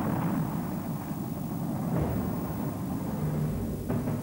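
A steady rumble of aircraft noise, with a sharp click just before the end.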